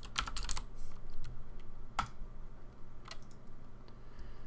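Typing on a computer keyboard: a quick burst of keystrokes in the first half-second, then a few single clicks spaced out over the following seconds.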